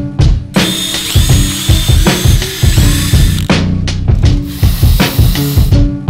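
Cordless drill running twice, a high whine with shifting pitch, over background music with a steady drum beat.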